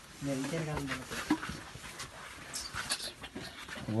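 A low, drawn-out vocal sound from a person in the first second, with a slight rise and fall in pitch. It is followed by scattered faint clicks and scuffs as people squeeze through a narrow rock passage.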